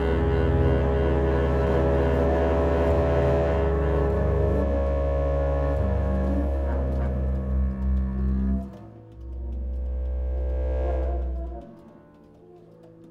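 Freely improvised electro-acoustic chamber music for double bass, saxophone and theremin with electronics: a loud, deep sustained drone under held and slowly gliding higher tones. The drone breaks off about two thirds of the way through, swells back, and stops shortly before the end.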